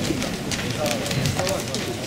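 Quieter background voices of people talking outdoors, with a few light clicks and knocks.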